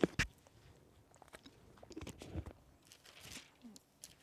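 Soft rustling and crinkling of thin Bible pages being turned by hand while searching for a passage, opening with a couple of sharp clicks.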